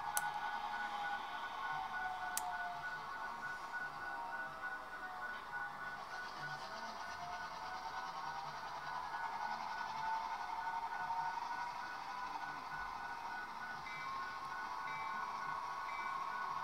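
Bachmann GP7 HO-scale diesel locomotive's Tsunami sound decoder playing diesel engine sound through the model's small speaker as it runs along the track, a steady tinny hum with slowly shifting tones. A pulsing higher tone joins near the end.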